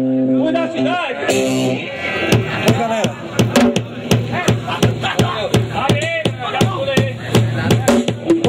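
Live punk band: a held guitar chord rings for the first couple of seconds, then drums keep up a steady beat of hits, about three a second, with a voice over them.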